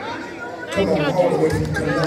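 Voices talking and calling out in a large hall, heard through the room. About three-quarters of a second in, the sound gets louder and a steady low sustained tone comes in under the voices.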